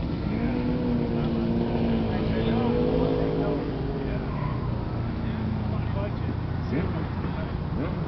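Steady low rumble with indistinct voices in the background, strongest in the first half.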